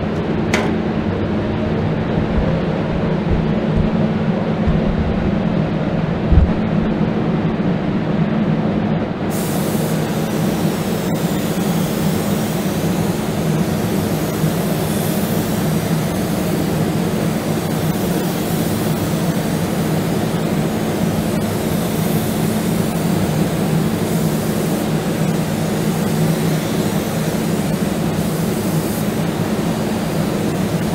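Paint-booth fans hum steadily. About nine seconds in, the loud hiss of a compressed-air spray gun starts and runs on, rising and falling slightly as clear coat is sprayed onto the truck body. A single dull thump comes shortly before the hiss starts.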